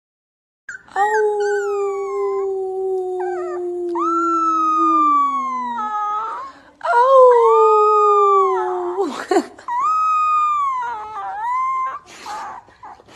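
A puppy howling: one long drawn-out howl of about five seconds that drops in pitch at its end, then two shorter howls.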